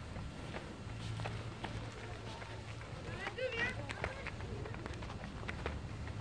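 Footsteps on a rubber running track, a run of short, light taps as a person steps over low training hurdles.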